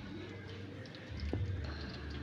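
Hot oil sizzling steadily around battered tempeh slices deep-frying in a wok, with small crackles and one brief click a little over a second in.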